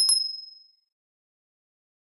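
Notification-bell sound effect: a click and a high, bright ding that rings out and fades away within about a second.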